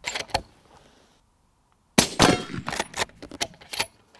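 A moderated bolt-action rifle fired once about two seconds in, a sudden loud crack; a sharp click comes right at the start, and a run of smaller clicks and knocks follows the shot.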